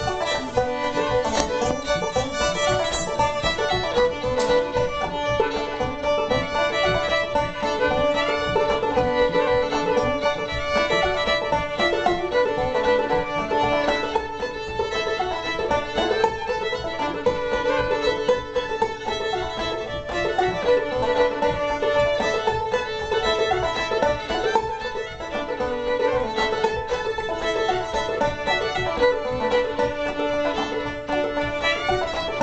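Fiddle and banjo playing an old-time tune together, the fiddle bowing the melody over the picked banjo.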